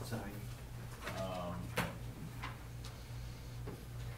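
Faint, indistinct talk in a meeting room, with a few sharp clicks and knocks, about one every half second to second, over a steady low hum.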